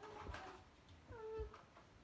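Two faint, high, meow-like cries: a short one at the start, then a clearer drawn-out one a little after a second in.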